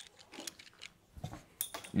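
Faint scattered clicks and light scraping of a threaded locking ring being unscrewed by hand from a Great White protein skimmer pump.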